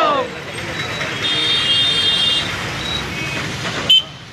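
Road traffic noise, with a high steady horn toot lasting about a second, starting about a second in, and a short sharp click near the end.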